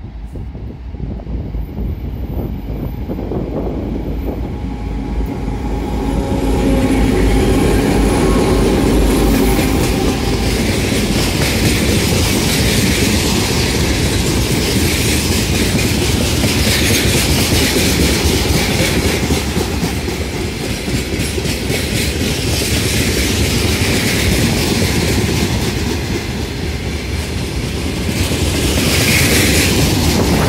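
A 2M62 diesel locomotive approaches with its engines running and comes by loudly at about six seconds in. A long freight train follows, its wagons rolling past with a steady rumble and clatter of wheels on the rails.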